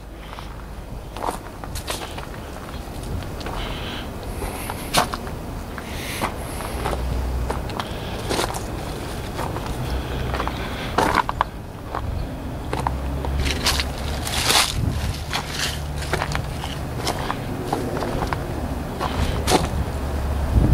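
Footsteps on gravel and dead leaves, uneven short steps with a low rumble underneath.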